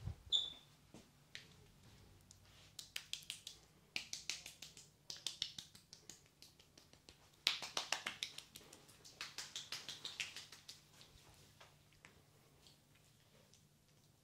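Close, crisp wet clicking of hands working over a cream-coated face in a face massage, coming in quick runs of several clicks a second that fade off, with pauses between them. A short high beep sounds just after the start.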